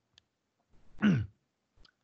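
A man's short wordless throat-clearing grunt about a second in, falling in pitch, with two faint clicks before and after it.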